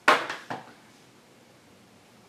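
Three quick taps of makeup tools on a hard surface, within about half a second, the first the loudest.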